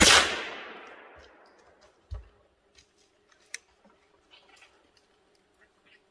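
A single rifle shot, a sharp crack that echoes and fades away over about a second and a half. A dull low thump follows about two seconds in, with a few faint ticks and rustles after.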